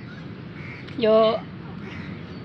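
A faint bird call just over half a second in, over steady outdoor background noise.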